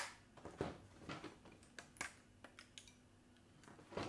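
Irregular sharp clicks and small cracks as a flexible 3D-printer build plate is bent to pop a glued-down PLA print off it, the print letting go of the plate bit by bit.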